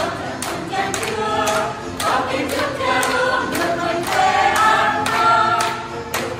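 Small mixed choir of men and women singing together, with hands clapping on the beat about twice a second.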